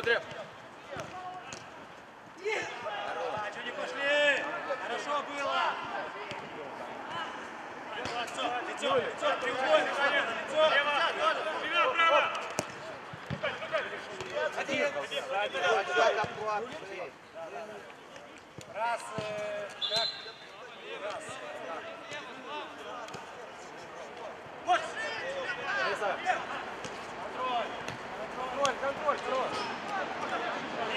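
Players' voices shouting and calling across a minifootball pitch, broken by short knocks of the ball being kicked and bouncing on artificial turf.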